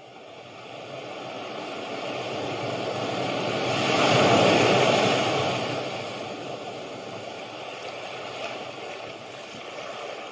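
Ocean-waves sleep-sound recording played from an Amazon Alexa smart speaker: the rush of surf swells to a peak about four seconds in and then washes back down.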